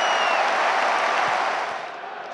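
Football stadium crowd applauding and cheering a goal, a dense wash of crowd noise that fades away near the end. A thin whistle sounds briefly at the start.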